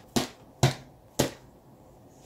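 A worn baseball smacked into a leather baseball glove, three sharp smacks about half a second apart.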